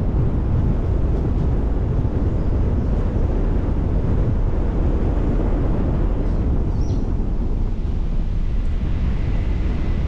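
Car driving along a paved road: a steady low rumble of road and wind noise, with wind buffeting the microphone. A faint brief high chirp comes about seven seconds in.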